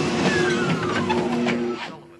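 Motorised treadmill running with rapid footfalls on the belt, its motor whine falling in pitch as the belt slows. The machine cuts out abruptly near the end.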